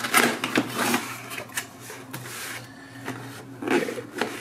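Cardboard product box being opened by hand: the lid and flaps scrape and rub against each other in several short spells, with a few light knocks.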